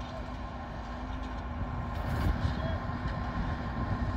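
Steady low rumble of heavy diesel machinery idling, with a faint steady hum over it.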